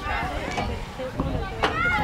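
Indistinct voices of players and spectators calling out across the field, over a steady low rumble. A single sharp knock comes about one and a half seconds in.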